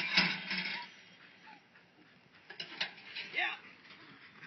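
Indistinct voices in short outbursts, opening with a sharp knock.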